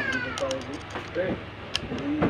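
A drawn-out vocal cry falling in pitch, fading out about half a second in, followed by a light click near the end.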